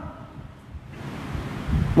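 A pause between speech filled with breathy hiss and rumble on a close microphone. It grows louder in the second half, with a low rumble just before the voice returns.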